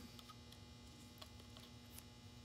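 Near silence: a faint steady electrical hum with a few faint small ticks.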